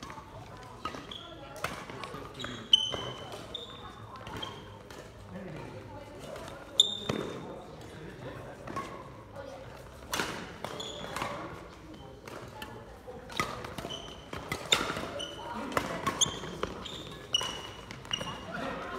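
Badminton rally on a wooden sports-hall court: sharp racket-on-shuttlecock hits every few seconds, with short high squeaks of court shoes and footsteps between them.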